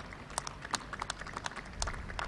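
Sparse, scattered clapping from an audience: a dozen or so irregular, sharp claps with no steady rhythm.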